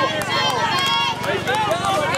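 Several voices at once, players and spectators calling and cheering at a softball game, with a few sharp clicks scattered through.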